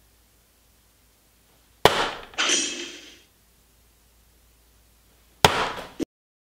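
Two soft-tip darts hitting a Vdarts electronic dartboard about three and a half seconds apart. Each hit is a sharp smack followed by a short trailing burst of sound from the board, the first with a second burst about half a second later. The second dart lands in the bull and finishes a 79 checkout.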